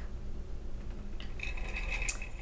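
Wooden spinning wheel during plying: a low steady rumble, a small click about a second in, then a short high squeak held for over half a second near the end.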